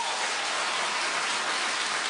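Studio audience applauding: a steady wash of clapping at an even level.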